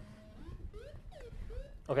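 Modular synthesizer voice driven by an Intellijel Metropolis sequencer in random mode: a run of short pitched notes that slide up and down in pitch.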